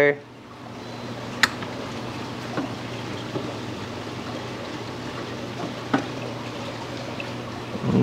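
Water sloshing and trickling in a small tub as gloved hands work bone cutters on a zoanthid rock under the water. Two sharp clicks stand out, one about a second and a half in and one near the end.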